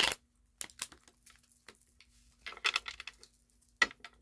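Tarot cards being gathered and handled on a tabletop: scattered light clicks and short card rustles, with a brief flurry near three seconds in and a sharp click near the end.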